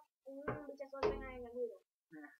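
Young men's voices talking, with a dull thump about a second in.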